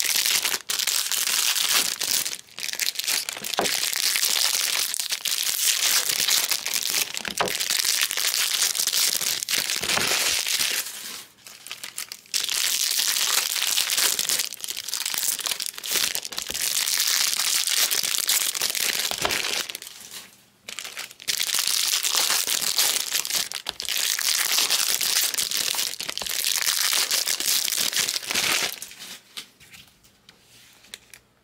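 Foil-wrapped Bowman Draft Jumbo baseball card packs being handled and crinkled, in three long stretches of about ten seconds with short pauses between them.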